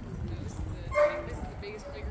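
Two dogs playing, with one short, loud bark about a second in and softer whines and play vocalisations around it.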